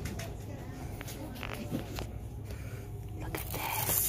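Shop ambience: a steady low hum under faint background voices, with scattered clicks and rustles of candy packaging being handled, building into louder plastic crinkling near the end.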